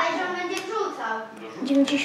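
Indistinct voices talking, with one voice holding a drawn-out sound near the end.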